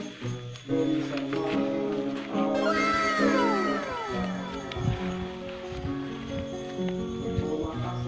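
Background music with held, chord-like notes. About two and a half seconds in, a descending gliding sound lasts a little over a second.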